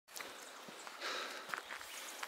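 Footsteps: a few irregular light scuffs and clicks, with a brief rustle about a second in.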